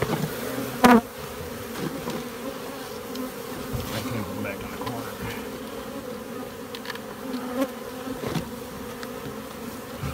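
Africanized honey bee colony buzzing as a steady hum, with a short loud knock about a second in and a few faint knocks of handling later.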